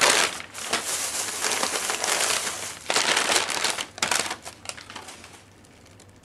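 Packaging crinkling and rustling in several bursts as a figurine is taken out of its wrapping, dying away after about four seconds.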